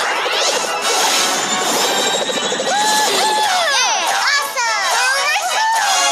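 Cartoon sound effects of a character rolled into a flying, bouncing furball: a rushing whoosh for the first couple of seconds, then springy boinging glides that rise and fall. Children's voices call out and music plays underneath.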